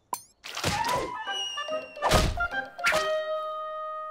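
Cartoon slapstick sound effects: a series of about four thuds, the heaviest and deepest about two seconds in, as a character takes a fall, over music with held ringing notes.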